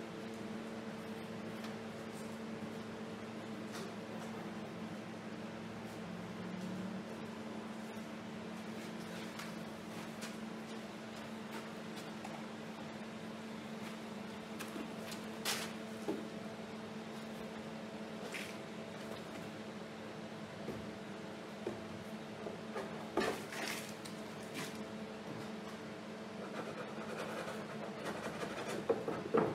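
Steady studio room hum with a couple of faint pitched lines, broken by a few short clicks and knocks in the second half.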